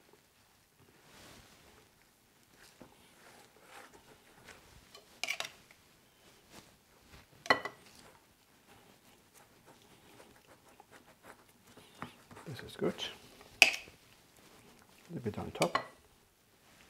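Quiet handling of chocolate sponge pieces being pressed and patted onto a cake board, with three sharp utensil clicks against a dish spaced several seconds apart.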